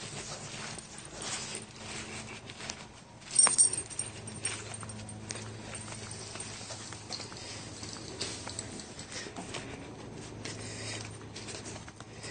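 A dog, loudest in one short, sharp sound about three and a half seconds in, over a steady low hum.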